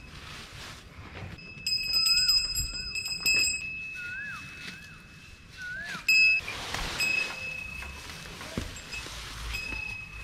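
A small metal bell ringing in a quick run of strokes about two seconds in and once more, briefly and louder, about six seconds in, with a faint ring lingering between. Green fodder rustles as it is handled and dropped, and a few short chirps come in between the rings.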